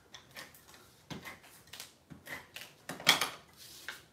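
Light clicks, taps and scrapes of cardstock being handled while a tape runner lays adhesive on it, with a sharper cluster of clicks about three seconds in.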